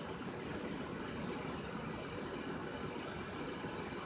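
Steady low rumble of a car idling, heard from inside its cabin.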